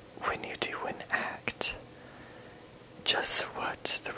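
A voice whispering lines of a poem close to the microphone, in two phrases with a pause of about a second between them.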